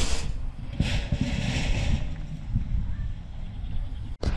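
Short hisses of solvent cleaner sprayed from a hand pump sprayer and a cloth wiping across a perforated metal security door. A low rumble of wind on the microphone runs underneath.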